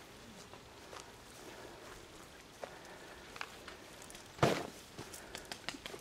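Quiet outdoor ambience with soft footsteps on grass, a few small clicks, and one sharp knock about four and a half seconds in.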